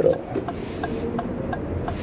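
Low steady hum inside the cabin of a 2023 Lexus RX 350h hybrid SUV rolling off slowly, with a few faint light ticks about four a second in the middle.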